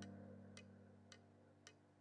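Near silence: a low note of soft background music fades out in the first second, with faint, even ticks nearly twice a second.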